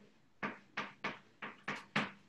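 Chalk writing on a blackboard: about five short, sharp tap-and-scrape strokes as letters are written.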